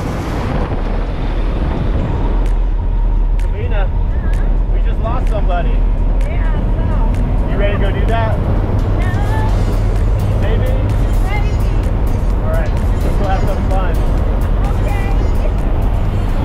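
Jump plane's engines droning steadily in the cabin during the climb, with voices and music over the drone.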